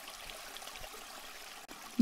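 Faint, steady sound of trickling water.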